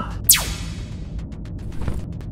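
Sci-fi blaster pistol shot sound effect: a single sharp zap about a quarter second in that sweeps quickly down in pitch and fades away, over background music.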